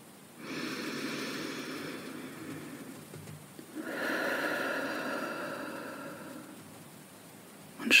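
A woman taking one slow, deep breath, audible as two long airy breath sounds of about three seconds each: a breath in, then a long breath out that fades away.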